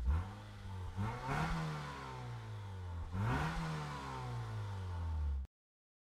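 A vehicle engine sound effect revving twice. Each rev climbs in pitch and falls back to a steady run, and the sound cuts off abruptly near the end.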